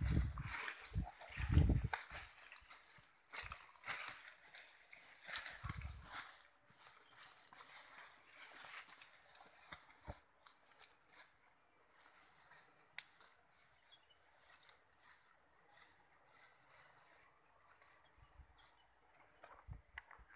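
Footsteps and rustling through dense grass and ferns, with low thumps, busiest in the first six seconds and then dropping to scattered quieter rustles and clicks.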